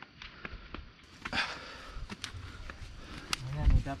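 Footsteps on a narrow dirt path through undergrowth: scattered soft clicks and scuffs, with a short rustle of leaves about a second and a half in and a low rumble on the microphone from about a second in.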